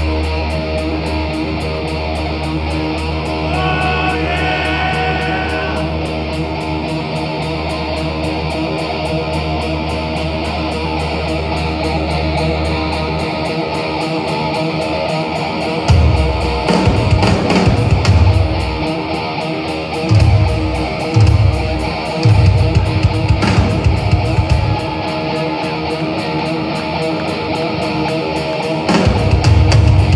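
Live rock band heard from the crowd, playing an instrumental passage: electric guitars ring over a held low note, then about halfway through the drums come in with loud, irregular hits and fills.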